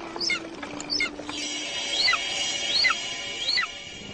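A bird's high call repeated about five times, each sliding steeply down in pitch, with steady high held tones joining from about a second and a half in.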